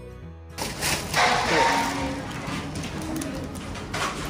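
Background music cuts off suddenly about half a second in, giving way to live shop sound with a loud rustle of a thin plastic carrier bag being handled around one to two seconds in.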